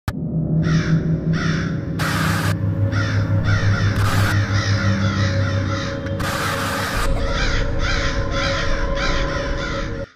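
Horror intro sound design: crows cawing over and over, about two calls a second, over a low, steady ominous drone, with three short rushes of hiss cutting through. It all cuts off suddenly at the end.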